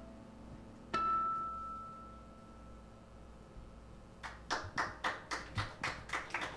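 A single high acoustic-electric guitar note struck about a second in and left to ring out as the piece ends. About four seconds in, a small audience starts clapping.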